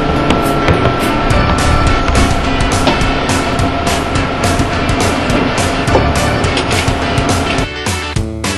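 Upbeat background music with a steady beat, switching to a different track near the end.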